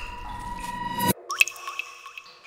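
A held musical tone cuts off abruptly about a second in, followed by three quick plinks like water drops falling.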